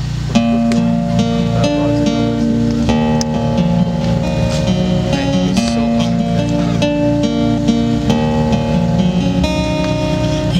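Acoustic guitar playing the chord intro to a slow song, starting about half a second in, with the chords ringing on and changing every second or so.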